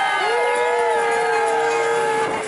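Riders' voices calling out in long held "whoo"-like cries mixed with laughter, several voices overlapping. One cry is held for about a second and a half and dips slightly near the end.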